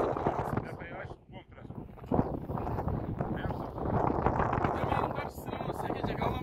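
Wind on the microphone with indistinct voices talking.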